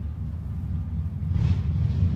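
Steady low rumble of outdoor background noise, with a soft rushing swell about a second and a half in.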